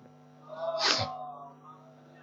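A person's single short, sharp breathy vocal burst about a second in, ending in a hiss.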